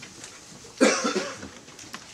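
A person coughing once, about a second in, a short, loud cough in a small room.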